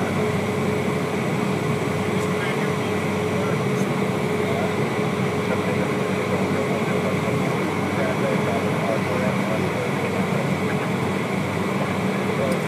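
Steady cabin noise of a Cessna Citation business jet's twin turbofan engines at taxi power, heard from inside the cockpit: an even rushing hum with a steady whine running through it.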